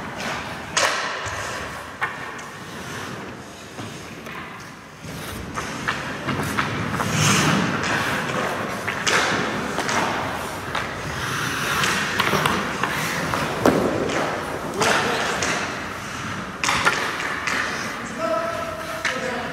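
Hockey skate blades scraping and carving on ice, with several sharp thuds and knocks scattered through, from pucks, sticks and pads striking.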